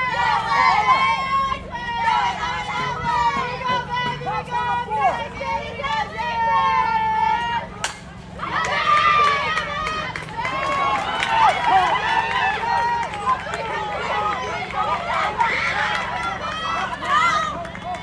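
Spectators and players yelling and cheering, with a single sharp crack of a bat striking a softball about eight seconds in, followed by louder, excited cheering.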